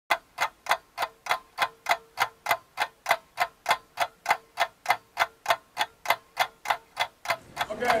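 Clock ticking steadily and evenly, about three sharp ticks a second, over a faint steady hum. The ticking stops about seven seconds in.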